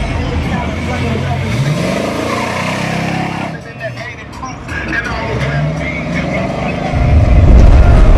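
A car engine revving up twice as cars cruise past, with people's voices around it. About seven seconds in, a loud deep boom, an explosion sound effect, takes over.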